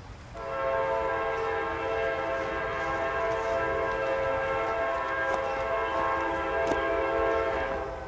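Diesel freight locomotive's air horn sounding one long blast of about seven seconds, several notes together, cutting off near the end.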